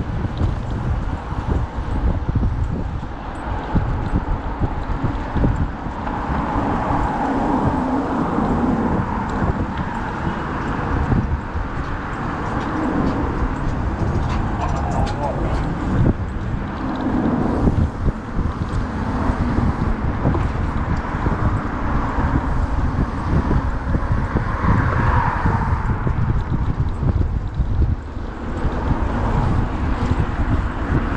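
Wind buffeting the microphone of a camera on a moving bicycle, a steady gusty rumble, with road and passing-car noise underneath. Indistinct voices come through at times.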